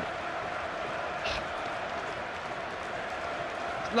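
Steady noise of a large football stadium crowd, many voices blending together.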